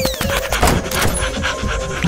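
A cartoon character's breathy panting.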